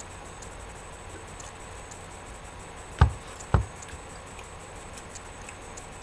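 Two sharp knocks about half a second apart, a little past the middle, over a steady low hum with faint light ticks.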